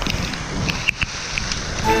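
Rushing wind and wet-trail noise of a mountain bike ride in the rain, heard on the riding camera's microphone, with a few sharp clicks and knocks. Music with long held notes comes in near the end.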